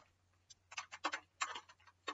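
A quick, irregular run of light clicks and taps, starting about half a second in, as drawing pens are handled.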